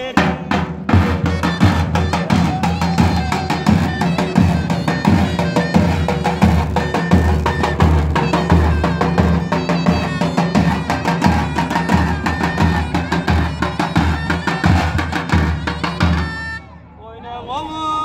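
Davul and zurna music: two davul bass drums beaten in a fast, steady rhythm with a heavy beater and a thin switch, under the zurna's reed melody. The music stops about a second and a half before the end.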